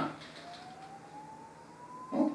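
A faint, thin single tone rising slowly and steadily in pitch, over low room hiss and a steady low hum.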